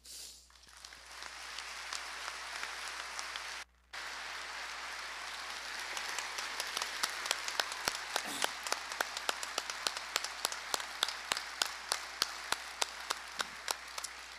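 Large audience applauding. The applause swells over the first couple of seconds, cuts out for a moment near four seconds, and in the second half sharp single claps stand out above the crowd.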